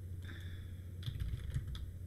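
Computer keyboard typing: a short run of quick keystrokes about a second in, over a low steady hum.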